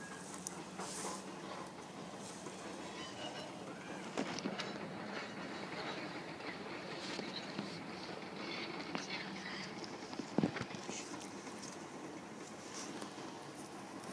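A distant freight train rolling through a rail yard, heard as a faint steady rumble with scattered clanks and one sharper knock about ten seconds in.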